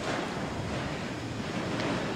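A steady, even rushing noise that gets a little louder at the start, with no clear tone or voice.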